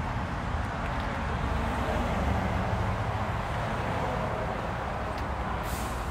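Steady outdoor background noise, a low rumble with hiss that holds at an even level, with one short hiss near the end and no distinct event.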